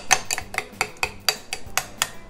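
Metal spoon clinking and scraping against a ceramic bowl while briskly stirring cottage cheese and raw eggs together, a steady run of about four to five clicks a second.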